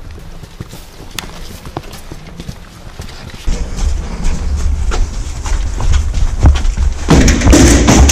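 Soldiers' boots stepping on a concrete courtyard, with short knocks and gear clatter and a low rumble of movement against a body-worn camera. Near the end comes a louder scraping clatter as a door is pushed open.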